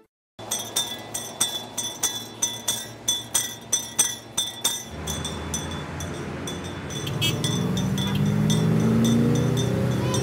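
A bell rung in a steady rhythm, about four strikes a second. From about halfway, road traffic joins in, and near the end car engines rise in pitch as they pull away.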